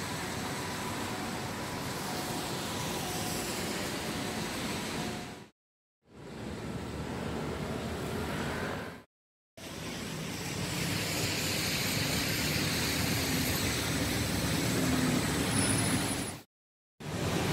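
City street traffic on wet pavement: a steady hiss of tyres and engines from passing cars, with a heavier engine rumble building in the last few seconds as a bus comes by. The sound breaks off twice for a split second at cuts.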